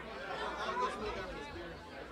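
Indistinct chatter of several people talking at once, at a low level, with no one voice standing out.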